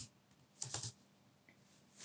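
A short run of computer keyboard keystrokes, three or four quick clicks a little over half a second in.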